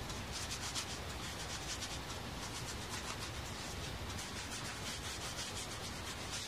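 A cloth rubbing over the leather of a Rawlings baseball glove in quick repeated strokes, wiping up the glove oil that has just been worked into it.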